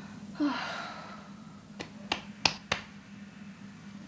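A young woman breathes out audibly, a sudden breathy sound about half a second in that fades over most of a second. Four sharp clicks follow a second later, over a low steady hum.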